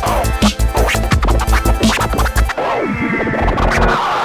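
Vinyl scratching on a portable turntable, the record pushed back and forth in quick rising and falling sweeps and chopped by a Mixfader crossfader, over a hip hop beat with heavy bass. The beat drops out a little past halfway, leaving the scratches on their own.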